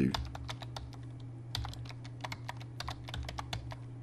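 Typing on a computer keyboard: a run of irregular key clicks as a name is typed in, over a steady low hum.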